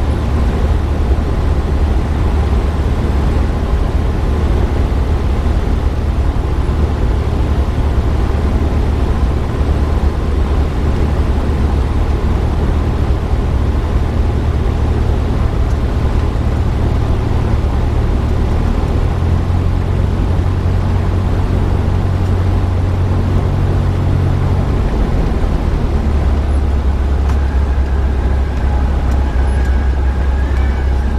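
Steady drone of a Cessna 172SP's piston engine and propeller heard in the cabin through short final and touchdown. The low note shifts up about two-thirds of the way in and drops again a few seconds later.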